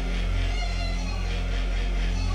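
Live-coded electronic music: a sustained low drone that swells and dips, under steady layered higher tones.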